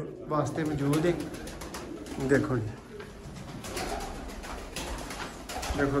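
Domestic high-flyer pigeons cooing in a small enclosed loft, with a flurry of short clicks and flutters in the second half.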